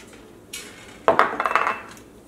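A small glass bowl knocking against a stainless steel plate as it is lifted out: a soft scrape about half a second in, then one loud clink about a second in that rings for about half a second.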